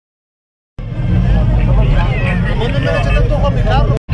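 Silence, then from about a second in, a person talking over a steady low rumble.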